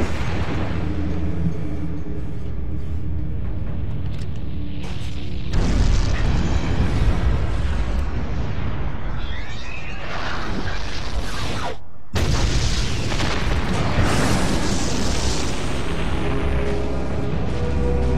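Dramatic cartoon score music laid over deep rumbling booms and blasts. The sound cuts out for a moment about twelve seconds in, then comes back.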